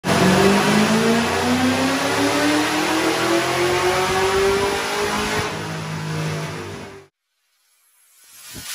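Supercharged V8 of a Cadillac CTS-V running a dyno pull, its pitch climbing steadily for about five seconds, then dropping back as the throttle closes. The sound cuts off abruptly at about seven seconds.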